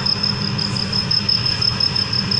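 A cricket trilling, a steady high rapidly pulsing note, over a low, even rumble.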